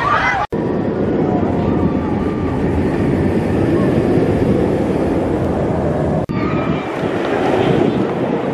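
Intimidator, a B&M steel hyper coaster, with its train running along the track in a steady roar. The sound breaks off abruptly twice, about half a second in and about six seconds in.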